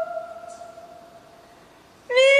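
A woman's solo singing voice ends a long held note, which fades away over about a second into the hall's echo. A brief pause follows before the next phrase.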